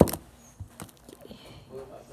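Homemade glue-and-lotion slime being pressed and stretched by hand on a tabletop: a sharp knock right at the start, then faint sticky clicks and pops.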